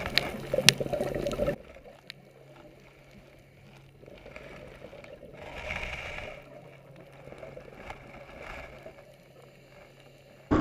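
Underwater sound picked up by a camera: a few sharp clicks in the first second and a half, then a sudden drop to a low watery hiss over a steady low hum. About six seconds in, the hiss swells to a gurgle.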